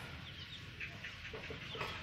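Faint chickens clucking in the background, a few short scattered calls.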